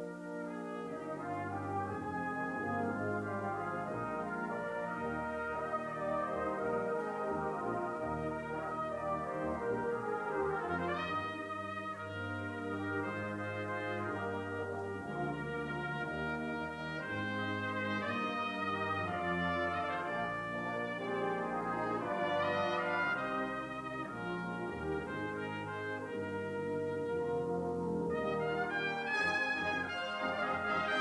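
Brass band music playing continuously, with a moving bass line beneath sustained chords and several quick upward runs, one about a third of the way in and more near the end.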